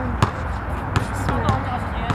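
Basketball bouncing on a hard outdoor court: three sharp bounces at uneven spacing, over faint voices.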